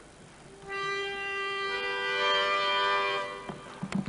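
A pitch pipe blown to give the choir its starting note: one steady held tone begins just under a second in, a higher note joins it about a second later, and both stop together a little after three seconds. A few short knocks follow near the end.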